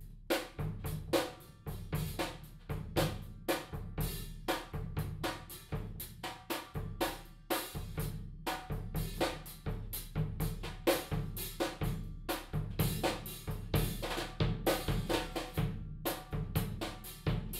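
Acrylic drum kit played with wire brushes in a bossa nova groove: light brushed snare and cymbal strokes over a steady bass-drum pattern, starting at once and running on evenly.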